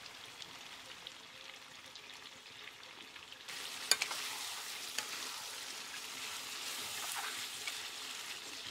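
Pork and leafy greens sizzling in an iron wok over a wood fire, with a metal spatula scraping and knocking against the pan as they are stirred. The sizzle grows louder about three and a half seconds in, and a couple of sharp knocks of the spatula follow just after.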